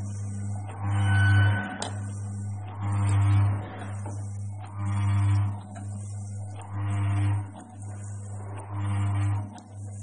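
Solpack SPS 30 pad printer running its automatic print cycle: a steady machine hum with a louder whirring swell about every two seconds as the pad head strokes, five strokes in all.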